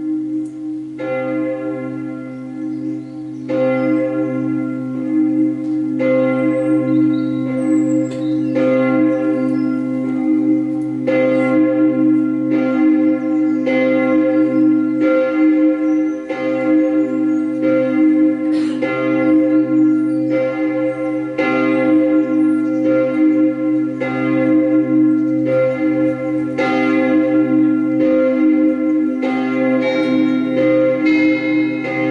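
Church bells ringing, a new strike about every second over a steady low hum.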